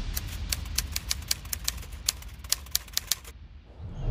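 Typewriter-style keystroke clicks, a quick irregular run of about six a second, as a sound effect for text being typed out; they stop a little after three seconds in.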